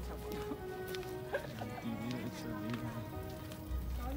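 Background music with chickens clucking over it in short, wavering calls.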